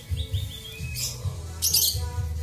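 Small caged songbirds chirping: a quick run of about four short falling notes in the first half second, then a harsher high call near the end, over background music.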